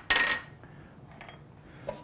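A brief clink of kitchenware being set down, with a short ring, followed by quiet kitchen room tone.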